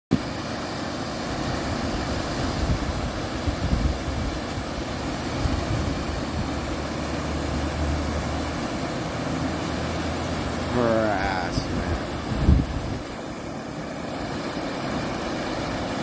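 Steady rush of river water pouring over a low weir into whitewater. Wind buffets the microphone in a few low thumps, and a voice is heard briefly near the middle.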